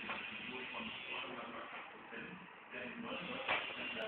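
Faint, indistinct voices over room noise, with a single short click about three and a half seconds in.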